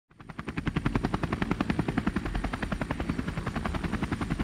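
Helicopter rotor sound, a steady fast chopping at about eight beats a second with a faint high whine above it, accompanying the toy emergency helicopter.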